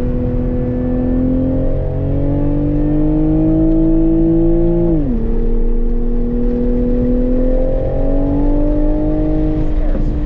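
A Toyota GR Supra's 3.0-litre turbocharged inline-six accelerating hard on track. The engine note climbs steadily for about five seconds, drops sharply at a gear change about halfway, then climbs again.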